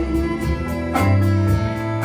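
Live country band playing an instrumental passage between sung lines: strummed guitars, fiddle and bass over a steady beat.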